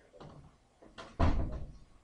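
A couple of light knocks, then one heavy thump a little past the middle that fades out over about half a second.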